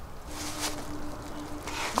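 A single honeybee buzzing steadily close by, with short rustling hisses from the hive being worked open, one near the start and one near the end.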